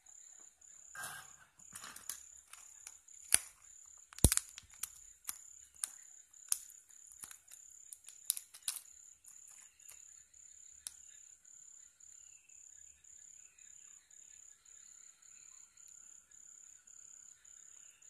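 Clicks and plastic crinkles from handling a small packet of replacement electret mics, with two sharper snaps about three and four seconds in; they thin out after about nine seconds. A faint, evenly pulsing high chirp sounds in the background.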